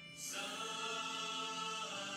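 Choral music: a choir singing long held chords, a new chord coming in just after the start and sustained.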